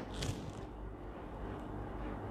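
Faint room tone with a low, steady hum: a pause with no speech or other distinct sound.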